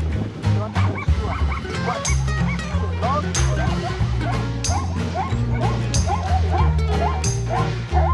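Background music with a steady bass beat. From about two seconds in, a run of short, rising yelping calls repeats two to three times a second: plains zebras barking.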